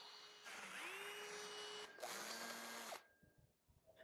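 Power drill boring a pilot hole into a stainless steel post: the motor whine comes in two runs, the first rising in pitch as it spins up and the second at a lower speed, stopping about three seconds in.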